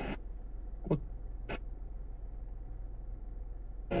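Low steady hum inside a small car's cabin, typical of its petrol engine idling. A word from the car radio comes about a second in, a single click about a second and a half in, and radio speech resumes at the very end.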